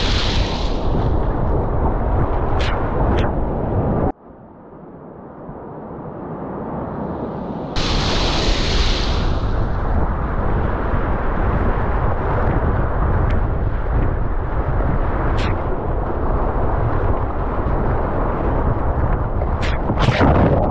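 Whitewater rapids rushing and splashing loudly around a kayak, close on a boat-mounted camera microphone, with water spraying onto it. About four seconds in the sound drops suddenly to a much quieter, duller noise, then comes back loud about eight seconds in.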